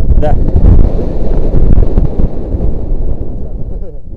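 Wind buffeting the camera microphone: a loud low rumble that eases off toward the end. A short spoken word comes near the start.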